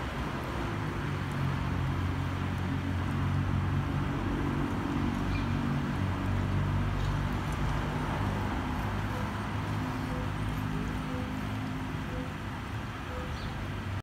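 Steady street traffic noise: a low rumble with the level hum of vehicle engines running throughout.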